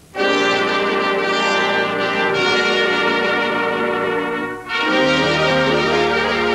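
A big band's brass section of trumpets and trombones playing long held chords. The chords break off briefly about two-thirds of the way through, then come back in.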